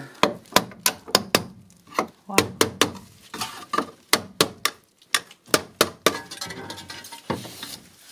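Hammer and pry bar knocking at clipped-in metal fittings on a bus's steel roof beam: sharp metallic knocks in short quick runs of several strikes, as the clips are worked loose.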